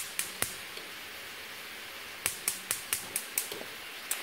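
Gas stove burner igniter clicking in two quick runs, about four to five sharp ticks a second: three ticks at the start, then a longer run of about seven from a little after two seconds in, as the burner is being lit.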